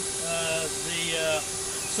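A man's voice speaking indistinctly, over a steady hum and background hiss.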